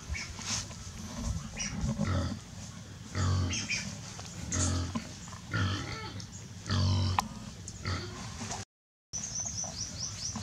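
An animal's short, low calls, repeated five or six times, about one every second or so.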